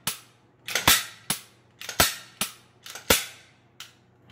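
Freshly reassembled Glock pistol being function-checked by hand: a series of sharp metallic clicks and snaps from the slide being racked and the striker being dry-fired. There are about nine clicks at roughly two a second, some in close pairs.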